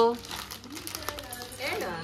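Crinkling of the plastic film wrapped around a gift box as it is handled, between spoken words.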